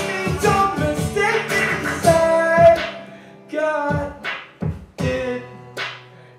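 Live acoustic guitar strumming with singing and hand percussion from a Roland HandSonic electronic pad. About halfway through the steady groove drops out, leaving a few separate strums and hits as the song winds down.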